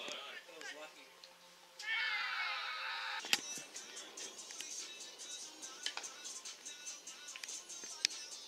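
Cricket bat striking the ball: one sharp crack about three seconds in. Just before it comes about a second of high, warbling sound, and after it a steady high chirping.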